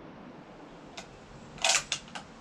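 Lee-Enfield No. 4 Mk I rifle's bolt being worked after a shot: one click about a second in, then a quick run of sharp metallic clacks near the end as the bolt is cycled to eject the spent .303 case and chamber the next round.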